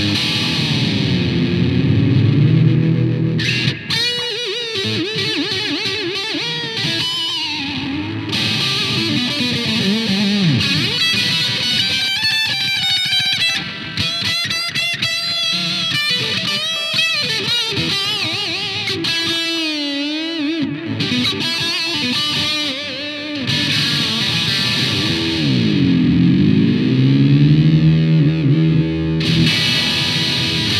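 Epiphone Les Paul electric guitar fitted with a Guyker Les Trem-style tremolo, played through a Raven RG-60 amp on high gain with a Tone City Model M overdrive, analog delay and reverb. It plays distorted lead lines, and near the start and again near the end the whole sound dips in pitch and comes back up on the tremolo arm.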